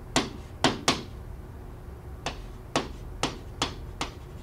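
A pen tip tapping against a screen while handwriting numbers and letters: about seven short, sharp taps at uneven intervals.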